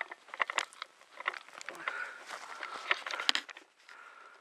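Irregular crunching, crackling and clicking of dry leaves and brush underfoot while moving with the crossbow, with a few sharper clicks about three seconds in.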